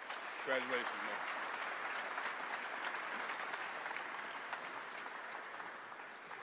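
An audience applauding, the clapping loudest in the first seconds and slowly fading, with one voice calling out briefly over it near the start.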